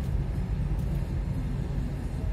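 A car's engine and tyre noise heard inside the cabin while driving at low speed: a steady low rumble.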